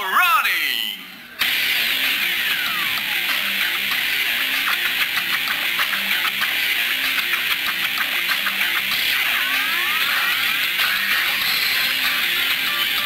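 A ring announcer calls out over the arena microphone in a long, drawn-out voice that cuts off about a second and a half in. Loud, dense fighter walkout music then takes over, with sweeping effects rising through it twice.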